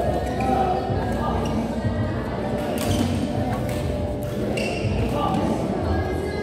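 Badminton racket strikes on a shuttlecock during a rally: a few sharp cracks in the second half, heard over a steady hubbub of voices in a large hall.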